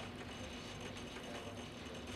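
A faint, steady low hum with no distinct events.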